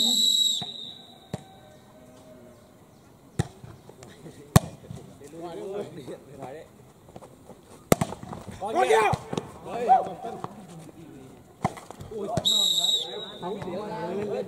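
Referee's whistle blown briefly at the start to signal the serve, then a volleyball rally of sharp ball strikes, a few seconds apart, and a second short whistle about 12 seconds in that ends the rally with a point.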